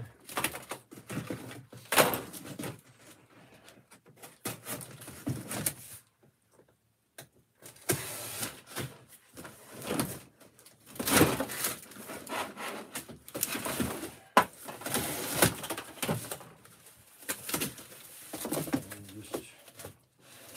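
Cardboard boxes being handled and opened on a shelf: irregular rustling, scraping and light knocks, with a short pause about six seconds in.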